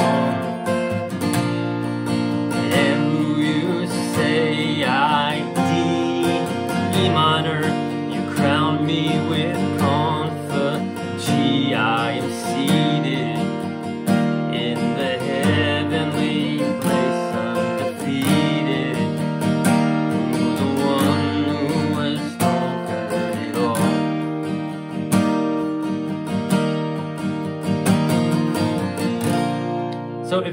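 Steel-string acoustic guitar played with a capo on the third fret, G-shape chords sounding in B♭, running through the chorus of a worship song with added passing chords, with a man's voice singing along at times.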